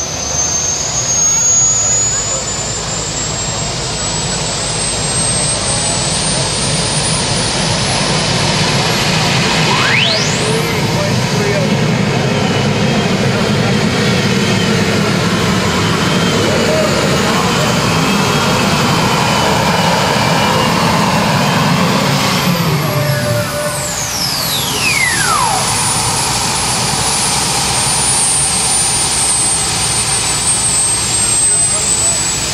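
A 5,800 lb modified pulling tractor running under full load on a pull, with a loud engine rumble and a high whine. The whine climbs steadily for about the first ten seconds, holds, then winds down from about two-thirds of the way through as the run ends.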